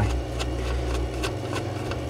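A low steady hum with a few faint, sharp clicks and taps as a hand handles the plastic lid of a burglar-alarm power-supply box.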